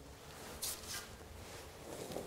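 Quiet hand-working of soft bread dough and coarse rye meal, with one brief soft rustle a little over half a second in.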